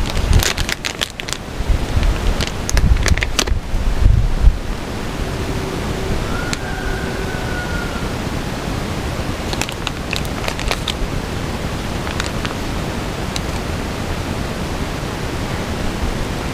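Steady wind noise on the microphone, with rustling, clicks and light crackles in the first few seconds and again around ten seconds in as a plastic seedling cell pack and soil are handled.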